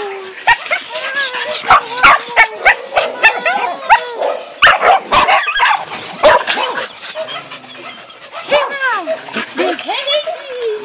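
Several excited Border Collies barking and yipping in quick, irregular succession, with high whines in between. The barks come thick for the first six seconds or so, then thin out, and a drawn-out whine rises and falls near the end.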